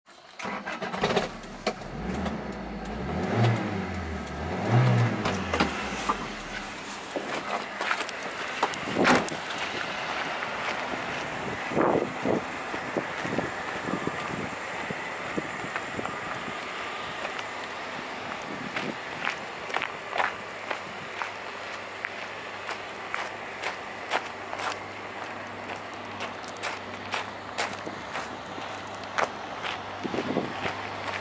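Toyota Hiace van's 1RZ-E 2.0-litre four-cylinder petrol engine starting about half a second in and revved twice in the first few seconds. After that comes steady outdoor noise with scattered clicks of footsteps on gravel.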